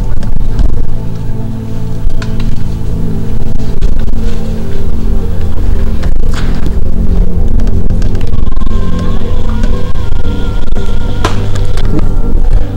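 Background music with a steady low drone, and a thin, wavering higher tone over the last few seconds.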